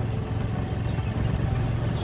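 Engine of the vehicle carrying the camera, running steadily at cruising speed as it drives along, a constant low hum with road noise.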